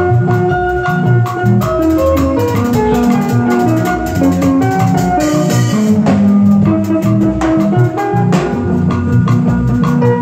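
Live band playing: electronic keyboards carrying a melody of short notes over a drum kit keeping a steady beat.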